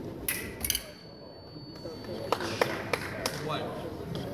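Foil blades clinking twice, then the electric scoring box sounding a steady high tone for about a second as a hit registers. Several more sharp clicks follow.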